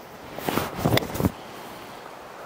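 A Titleist T350 iron striking a golf ball: one sharp click about a second in, the ball struck out of the middle of the face.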